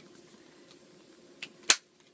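Two clicks near the end, a faint one and then a single sharp one, from a phone case being handled, against quiet room tone.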